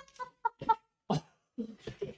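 Laughter in short bursts broken by sharp breaths.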